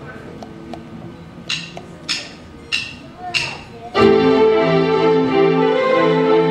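A live band's keyboard begins a song. Faint held notes come first, then four short sharp sounds evenly spaced about 0.6 s apart. About four seconds in, the band comes in loud with sustained keyboard chords.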